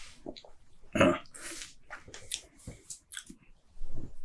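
Wet lip smacks and tongue clicks from a man tasting a mouthful of beer, a run of short sharp clicks after a brief grunt about a second in.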